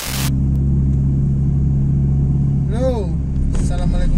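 Steady low drone of a car's engine and tyres heard from inside the cabin while driving, after a short burst of noise at the very start.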